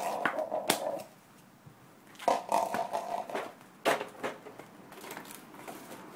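A voice calling out at the start, then a second drawn-out call about two seconds in, with a few sharp knocks, the loudest about four seconds in.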